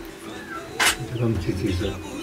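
Men's low voices talking quietly, with one short sharp snap a little under a second in.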